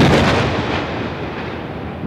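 An explosion-like boom sound effect: a sudden burst of noise that slowly dies away over about two seconds.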